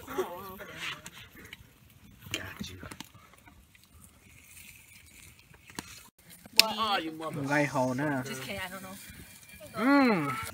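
Mostly quiet for about six seconds. Then a sharp click, followed by about three seconds of a person's voice making drawn-out, sing-song sounds without clear words.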